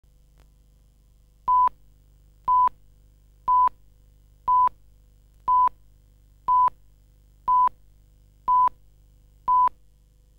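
Film countdown-leader beeps: a short, loud single-pitch tone pip once a second, nine in all, over a faint low hum.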